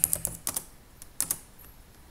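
Computer keyboard keystrokes as a password is typed and entered: about seven sharp key clicks in the first second and a half, then they stop.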